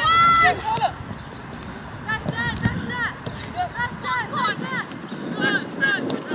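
Women's football players shouting and calling to each other during play: a loud shout at the very start, then scattered short, high-pitched calls from further away.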